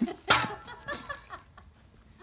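One sharp smack of a swung shovel hitting a thrown apple, about a third of a second in. Faint voices trail off after it.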